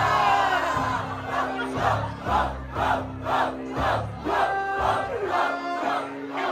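Crowd cheering, then shouting together in rhythm, about twice a second, over a hip-hop beat.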